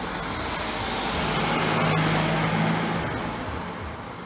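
A motor vehicle passing close by: its noise swells to a peak about halfway through and then fades, with a steady engine hum at the loudest part.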